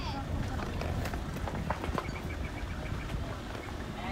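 Footsteps on dirt ground as someone walks, over a steady low rumble of wind and handling on the microphone, with scattered light knocks. About two seconds in comes a short, even run of faint high ticks.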